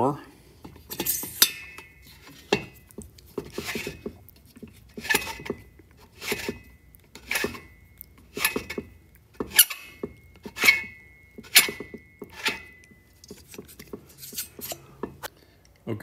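Neway hand-turned valve seat cutter scraping a 45-degree valve seat in a Volkswagen cylinder head, a short metallic scrape with a brief ring about once a second as the T-handle is turned. The seat is being cut deeper until the 45-degree face cleans up all the way around.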